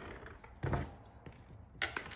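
Handling of dried wreath materials on a workbench: a short rustle just over half a second in, then a sharp click or knock near the end.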